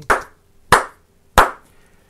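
Three sharp hand claps, evenly spaced about two-thirds of a second apart: a sync clap for lining up separately recorded lavalier-mic audio with camera video.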